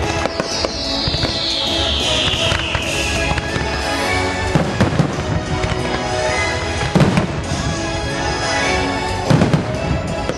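Aerial fireworks bursting over loud orchestral show music, with sharp booms about four and a half, five, seven and nine seconds in. A long falling high tone sounds through the first three seconds.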